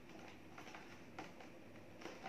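Faint handling of a cardboard box: fingers picking at the top flap, giving a few light clicks and scratches.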